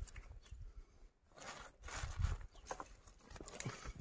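Faint, scattered handling sounds as hands work spice-coated mackerel fillets on a plastic bag: soft rustles and small clicks, with a low thud about two seconds in.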